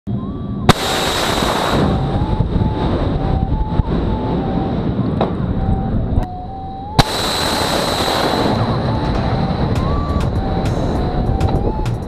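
Two Harpoon anti-ship missiles fired from a shipboard canister launcher: each launch opens with a sharp crack, the first under a second in and the second about seven seconds in. Each crack is followed by the loud rush of the solid rocket booster, over a continuous rumble.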